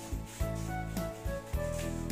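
Scissors snipping and cutting through paper, over background music with a steady beat of about two beats a second.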